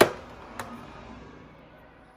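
Plastic makeup compacts clicking against each other and the acrylic drawer dividers as one is picked out of the drawer: a sharp click, then a softer one about half a second later.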